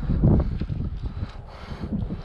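Wind buffeting the microphone: an uneven low rumble, strongest in the first half second, with a few faint taps later on.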